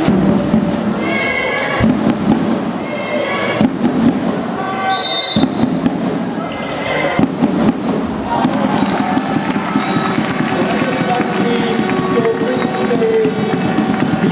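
Handball game in a sports hall: the ball bouncing and thudding on the floor in separate knocks, short high shoe squeaks, and voices of players and spectators in the hall.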